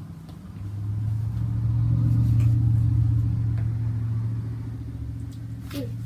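A low, steady hum of unchanging pitch swells up over about two seconds, holds, then fades away. A few faint clicks sound over it.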